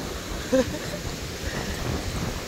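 Ocean surf washing on the beach, mixed with wind buffeting the microphone: a steady rush of noise.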